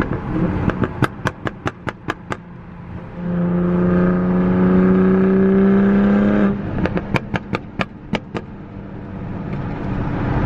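Tuned Toyota Supra Mk5 running on E85, heard from inside the cabin at freeway speed. A quick run of sharp exhaust pops comes first, then the engine pulls for about three seconds with its note rising slightly, then a second run of pops.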